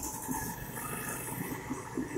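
Marker pen rubbing and scratching on a whiteboard as equations are written, over a faint steady room hiss.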